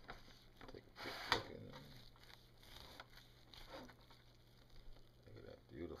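Knife cutting into a roasted pork shoulder in its pan, with a short, loud rasp about a second in, then fainter scraping and cutting noises.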